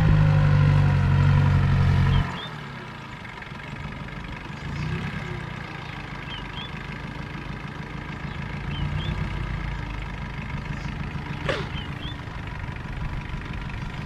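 Small farm tractor's engine running as it hauls a loaded trailer. It is loud and close for about the first two seconds, then drops suddenly to a quieter, steady low chugging.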